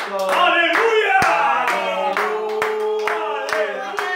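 A group clapping hands in a steady rhythm, about three claps a second, while voices sing along, one holding a long note in the second half.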